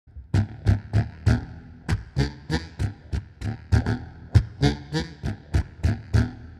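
Hohner Bass 78 extended bass harmonica played as a rhythmic one-chord jam. Short, punchy low notes with breathy chopped attacks, about three a second.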